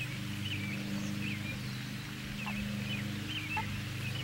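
Birds chirping in short, scattered calls over a steady low droning hum.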